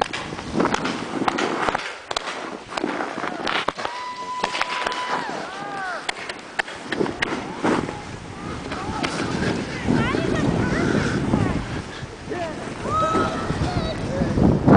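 Skis and snowboards rushing over snow, with wind buffeting the microphone, while people whoop and call out as they start down the slope.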